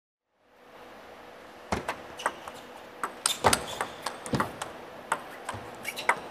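Table tennis rally: the ball clicking sharply off the bats and the table in an irregular run of hits, about two or three a second, starting under two seconds in, over a faint steady background.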